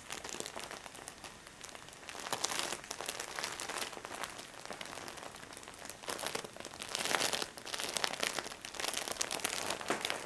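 Crinkly material rustling and crackling under a cat's paws as it shifts its weight and treads, in uneven bursts with louder stretches about two seconds in, around seven seconds and near the end.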